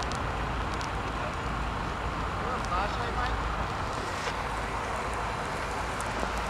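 Semi tractor burning: a steady rushing roar over a low rumble, with scattered crackles and pops from the fire.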